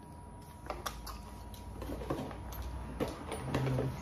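Scattered light clicks and handling rattle from a plastic drill-bit case as a 5/16-inch drill bit is taken out of it.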